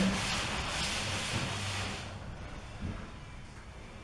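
A damp rag being wiped across a sanded drywall patch to pick up the dust, a rubbing hiss that stops about halfway through.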